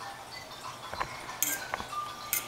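A baby's musical jungle-mat toy playing a little song of short, high notes, with a few clinks of a metal spoon stirring yarn in a stainless steel pot about a second in.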